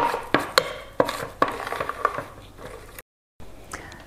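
Irregular light clinks and knocks of kitchen utensils against a metal muffin tray and the countertop, several in the first three seconds, followed by a brief dropout to silence.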